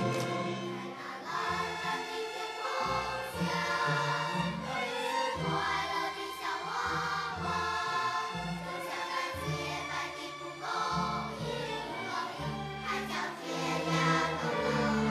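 A children's choir singing a song together, accompanied by a children's orchestra led by violins and cellos, in a steady moderate-tempo piece with held notes over a moving bass line.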